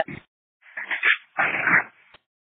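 Two short bursts of noise over a public safety scanner radio, about half a second each, one about a second in and one shortly after: brief garbled or static-filled transmissions between dispatches.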